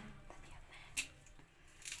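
A knife cutting fresh coriander held in the hand: one sharp snip about a second in and a few fainter ones, otherwise quiet room tone.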